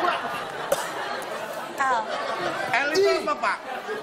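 Several men's voices talking over one another in short, overlapping exclamations, with no single clear speaker.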